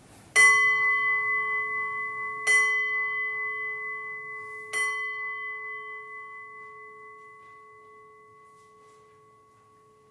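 An altar bell struck three times, about two seconds apart, each strike ringing on and slowly dying away. The bell is rung at the elevation, after the words of institution over the bread.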